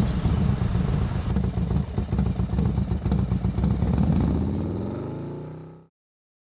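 Honda XRE300's single-cylinder engine idling with a steady, rapid low pulse, amid street traffic. The sound fades out near the end.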